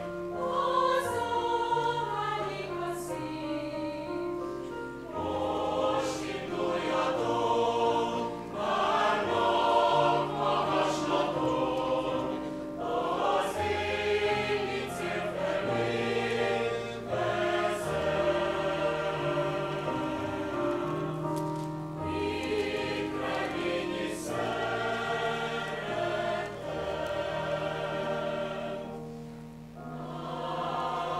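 Mixed choir singing a sacred song in several parts.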